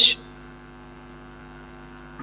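Steady electrical mains hum, a low even buzz in the recording, heard in a pause after a spoken word ends right at the start.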